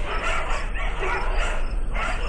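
Several dogs fighting, a continuous jumble of dog noises without a pause, laid in as a sound effect.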